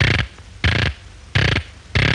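Four evenly spaced noisy percussive hits, about two every second and a half, in a break between phrases of the cartoon's music score.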